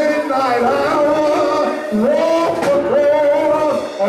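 A man singing into a handheld microphone in long held notes that slide in pitch, with a short break about halfway.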